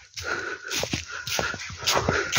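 Footsteps crunching through dry leaf litter, with the rustle of leaves and brush, several crisp steps.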